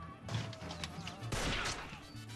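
A volley of gunshots, many sharp reports in quick succession and heaviest in the second half, over low, steady dramatic film music.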